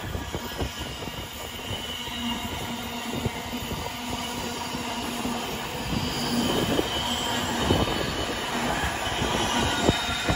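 Container wagons of a freight train rolling past at speed: a continuous wheel-on-rail rumble with irregular sharp clicks as the wheels cross rail joints, and one louder click near the end.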